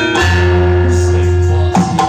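Campursari band music: ringing gamelan-style metallophone notes held over a steady low bass and drum, with fresh notes struck twice.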